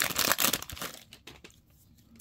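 Foil booster pack wrapper crinkling as it is pulled open, a dense crackle that dies away about a second in.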